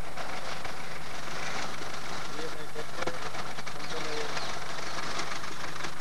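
Steady hiss with a low, even hum underneath, and faint distant voices now and then.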